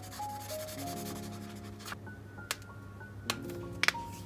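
Marker pen rubbing in short strokes on journal paper for about two seconds, then a few sharp clicks near the end. Soft instrumental background music plays throughout.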